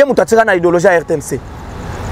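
A man speaking in an animated voice, then pausing near the end.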